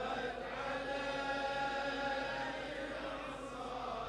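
Many men's voices together holding long, steady notes: the congregation's low collective chant or moan, much quieter than the solo reciter. It fades slightly towards the end.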